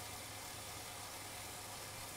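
Steady low hum of a wheel-on indoor bicycle trainer, the rear tyre spinning on its roller under even pedalling.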